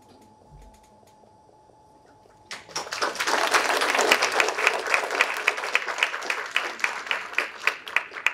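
Small audience applauding. The applause starts suddenly about two and a half seconds in after a quiet moment, with single sharp claps standing out in the mass, and it begins to thin out near the end.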